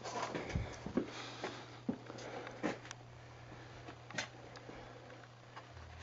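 Camera handling noise, with scattered clicks, rustles and knocks as the camera is swung around, over a steady low hum in a basement boiler room.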